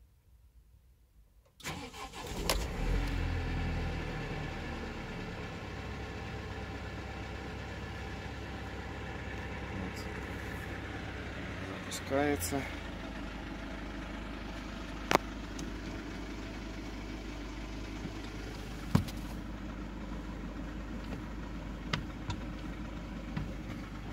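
Mercedes-Benz Sprinter's 163 hp diesel engine starting about a second and a half in, louder for the first couple of seconds as it catches, then idling steadily. A few sharp clicks come during the idle. The idle is even, which the seller takes to mean the engine's damper is fine.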